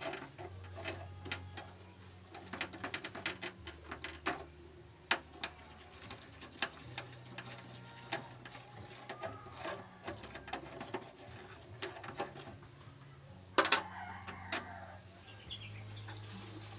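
Metal kitchen tongs clicking and scraping against a small aluminium llanera held over a gas burner while sugar caramelizes in it, with a louder clatter about three-quarters of the way through.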